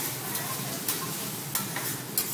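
Egg frying and sizzling on a hot teppanyaki steel griddle, with a metal spatula scraping and tapping on the plate a few times as it pushes the egg.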